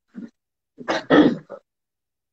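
A man clearing his throat: a rough burst about a second in.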